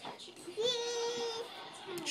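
A toddler's voice holding one high, steady vocal note for about a second, starting about half a second in.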